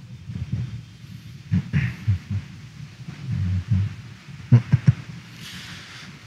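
A congregation sitting down and settling into pews: irregular low thumps and shuffling, with a few sharper knocks about four and a half seconds in.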